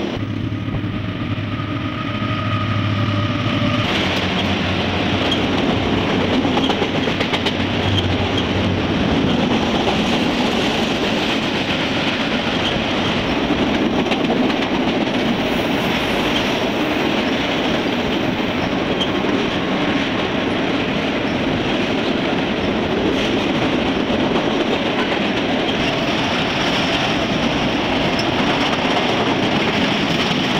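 A freight train's cars rolling past on the rails, a steady dense noise of wheels on track with scattered sharp clicks. A low steady hum runs under it for the first few seconds.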